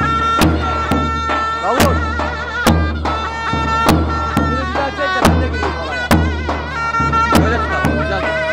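Zurna playing a loud, reedy folk dance tune of long held high notes broken by quick trills, over deep, uneven beats of a large double-headed davul drum: live halay music.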